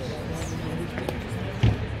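Indistinct talking of several people, with one dull low thump a little past one and a half seconds in.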